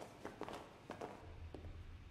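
Faint footsteps of several people walking, a quick, uneven run of light steps, with a low hum coming in near the end.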